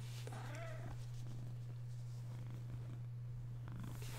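A steady low hum under quiet room background, with a brief faint voice-like murmur about half a second in.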